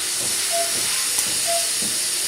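Steady hiss of a surgical suction clearing the patient's mouth. Over it the patient monitor's pulse oximeter beeps twice, a short mid-pitched tone about a second apart.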